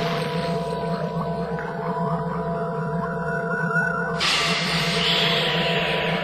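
A drum-free breakdown in a jump-up drum and bass mix: sustained electronic drones with a wavering high synth tone. A hissing swell comes in suddenly about four seconds in.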